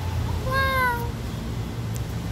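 A young tabby kitten gives one short meow, rising and then falling in pitch.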